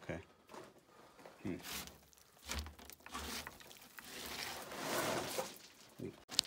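Scraping, rustling and scuffing against wooden planks as a person hauls himself up a steep wooden ore chute, with scattered sharp knocks and a denser stretch of scraping near the end.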